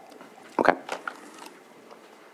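Quiet room tone from the meeting microphones, broken by a brief spoken "okay" and a short mouth or mic noise about half a second to a second in.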